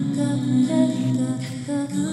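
A cappella female vocals layered by live looping: sustained hummed tones held steady underneath, with a softer wavering sung line over them.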